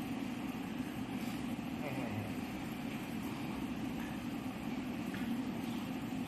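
Steady room noise with faint, indistinct voices in the background.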